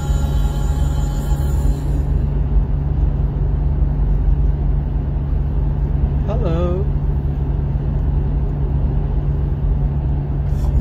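Steady low rumble of a car driving, heard inside the cabin. Music stops about two seconds in, and a brief voice sound comes a little past the middle.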